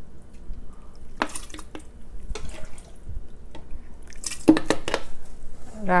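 Metal ladle scooping shredded jelly from a stainless steel pot, clinking against the pot: single sharp clinks about a second and two and a half seconds in, then a quick run of louder knocks about four and a half seconds in.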